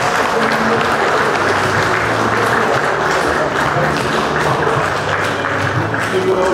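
Audience applauding steadily, with background music underneath.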